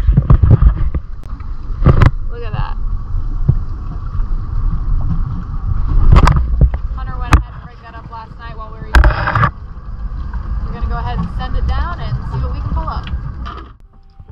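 Wind buffeting the microphone on an open boat at sea: a steady low rumble broken by several loud gusts, under a person talking.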